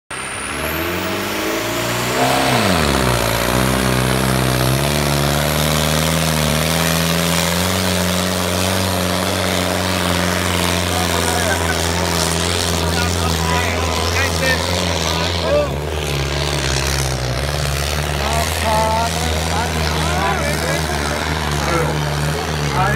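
Fiat tractor's diesel engine running hard under load as it drags a harrow in a tractor-pulling race. Its pitch sweeps down sharply about two seconds in, steps up again a couple of seconds later, then holds steady. Crowd voices rise near the end.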